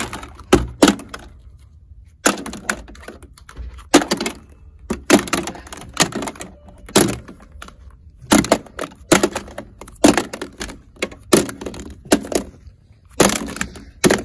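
Hollow plastic gashapon capsules dropped one after another into a capsule-vending machine's plastic drawer while it is being restocked, clacking against the drawer and each other: a string of sharp clacks, about one or two a second.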